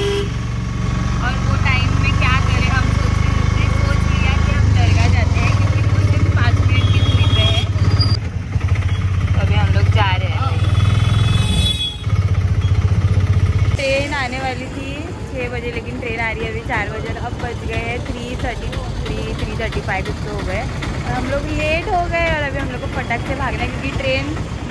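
Small auto-rickshaw engine running steadily, heard from inside the passenger cabin under people talking. About fourteen seconds in the engine sound stops, leaving voices over lighter street noise.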